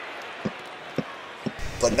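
A basketball dribbled on a court floor, in a cartoon sound effect: short low bounces about twice a second, four in all.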